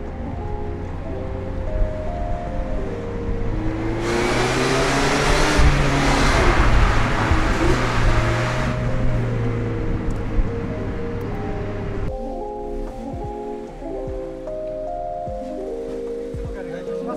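Background music with a light repeating melody throughout. From about four seconds in, the engine and tyre noise of a Mazda MX-5 ND Roadster in a road tunnel comes up loud under the music, the engine pitch rising and falling. It cuts off suddenly about twelve seconds in.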